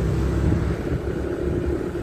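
Steady low rumble of a motorcycle underway, the engine and road noise heard from the moving bike.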